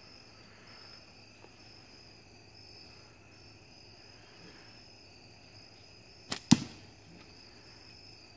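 A slingshot shot about six seconds in: a snap of the light latex bands on release, then a louder sharp hit a fifth of a second later as the heavy ball strikes the spinner target. Insects chirr steadily throughout.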